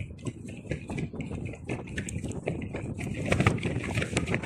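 Black nylon ripstop parachute trousers rustling and crackling as wind flaps the fabric, with a low rumble of wind on the microphone. It grows louder near the end.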